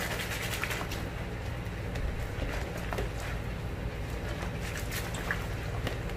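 A hand swishing and stirring soapy water in a basin to work up a lather: soft, faint sloshing with small scattered splashes.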